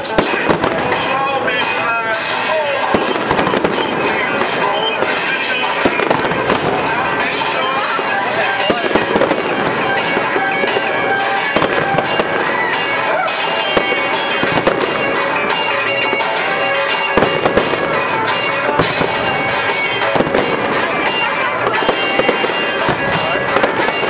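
Fireworks display: a continuous run of bangs and crackles from bursting shells, with music playing throughout.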